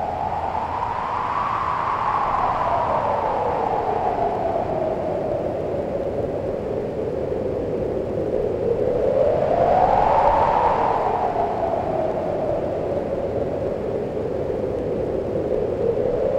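Wind-like whooshing in a film soundtrack: a band of hiss that slowly rises and falls in pitch, swelling about a second and a half in and again about ten seconds in.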